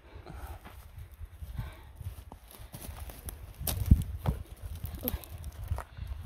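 Footsteps and handling noise on gravelly forest floor covered in pine needles: scattered crunches and knocks over a steady low rumble, with a short cluster of sharper knocks about four seconds in.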